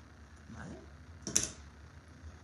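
Scissors cutting brown felt: one short, sharp snip a little past halfway, the loudest sound, over faint handling of the cloth.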